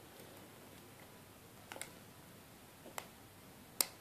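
Faint, sparse metallic clicks of a thin pick working the pin stack of a brass Abus 85/50 padlock that is held in a false set: a quick double click a little under two seconds in, another about three seconds in, and the sharpest one near the end.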